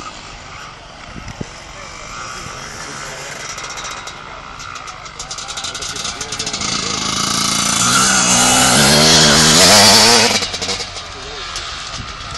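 Motocross motorcycle engines on a snow track: fainter engine noise at first, then one bike's engine revving up and down as it comes through a corner, growing louder to a peak about ten seconds in and then dropping away sharply.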